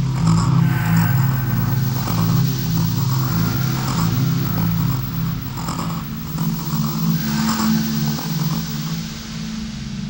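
Electro track in a breakdown with no drums: a low synth bass pulses steadily under hazy synth washes that swell and fade a few times.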